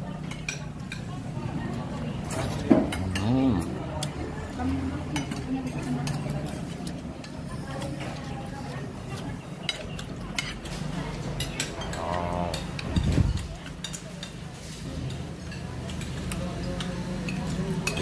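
Scattered light clinks and taps of china plates, a soup bowl and a spoon while someone eats at a table, over a low steady hum.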